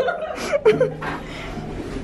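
A woman chuckling briefly in the first second, then quieter voice sounds.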